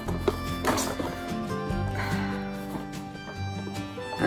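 Background music with held chords that shift every second or two, with a few light clicks from handling the plastic-packaged toy.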